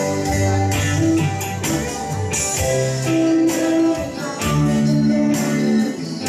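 A man sings a church worship solo through a handheld microphone and PA, holding long notes over instrumental accompaniment with guitar and light percussion hits.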